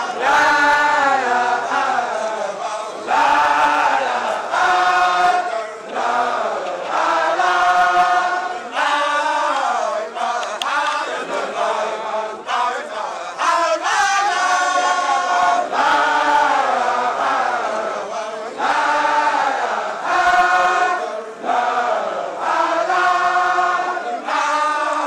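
Group of Baye Fall men chanting together in chorus, short sung phrases following one after another.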